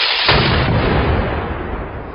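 Volley of blank rifle shots from a line of soldiers: a loud report about a quarter second in, following an earlier burst just before, with the echo dying away slowly afterwards.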